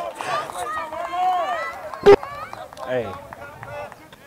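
Excited, indistinct voices of players calling out on the field, with one sharp knock about two seconds in.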